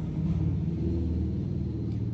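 A low, steady hum with a few held low tones.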